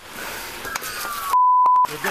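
A censor bleep: one steady, high, pure beep about half a second long, a second and a half in, blotting out a word on the body camera audio. Before it comes a stretch of hiss and rustle from the body camera.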